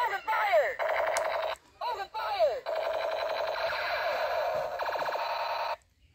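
Battery-powered toy pistol playing its electronic firing sound effects: falling "pew" sweeps at the start and again about two seconds in, then a steady warbling electronic tone for about three seconds that cuts off suddenly near the end.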